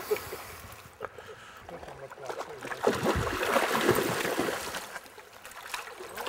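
A hooked silver (coho) salmon splashing at the surface of a shallow river: a short splash at the start, then a longer spell of splashing from about three seconds in.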